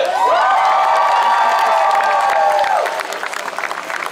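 One voice holds a long shouted call for about two and a half seconds, rising at the start and falling away at the end. An outdoor audience cheers and claps as a performing group is introduced, and the clapping stands out after the call ends.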